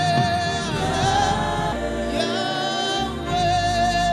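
Slow gospel worship music: voices singing long held notes over steady low chords.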